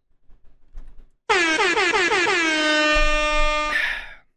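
Air-horn sound effect: one long blast of about two and a half seconds, wavering in pitch at first, then held steady and cut off sharply. Faint clicks come before it.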